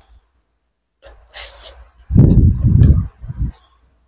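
Close-miked eating sounds from someone chewing battered fried tempeh: a short sniff of breath, then a second of loud, muffled chewing and a brief last chew.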